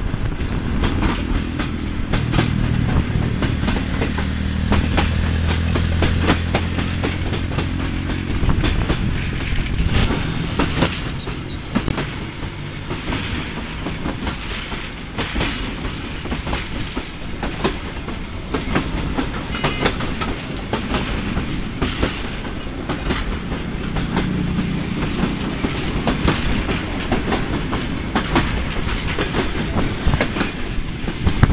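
Passenger train running along the line, heard from inside a carriage: steady wheel and rail noise with frequent clicks of the wheels over rail joints. A low hum underlies the first eight seconds or so, then fades.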